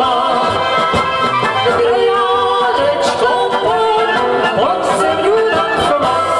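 Two women and a man singing a Czech folk song together in harmony, with band accompaniment.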